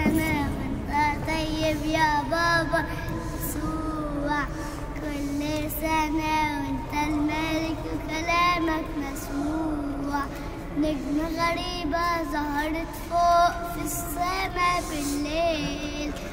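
A young boy singing a children's church hymn solo into a handheld microphone, one clear voice carrying a simple melody through the whole stretch.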